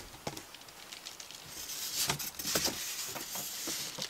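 Cardboard box and its packing being handled: scattered clicks and knocks, then a denser rustling and scraping from about a second and a half in, as the computer is worked out of the box.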